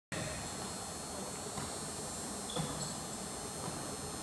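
Steady background noise of a large gymnasium, with a few faint short squeaks and a light knock a little past the middle from players moving on the hardwood court.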